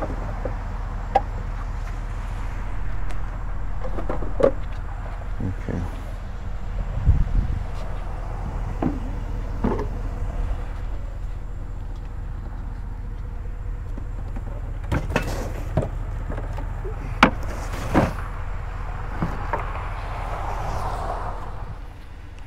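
An old wooden sewing machine table being handled: its drawer pulled and scattered knocks and taps of wood, over a steady low hum.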